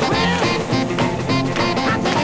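Merseybeat twist record playing from a vinyl single: up-tempo early-1960s rock and roll with a steady beat.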